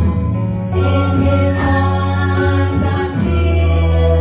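Live worship band: several singers in harmony over keyboard, guitars and a sustained bass line.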